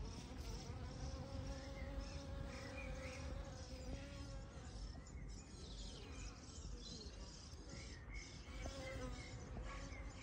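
Honeybees buzzing as they fly low over pond water. One steady hum is strongest in the first few seconds, fades, and comes back briefly near the end.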